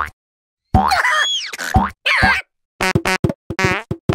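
A run of short, springy cartoon sound effects, bouncing up and down in pitch, with brief silent gaps between them.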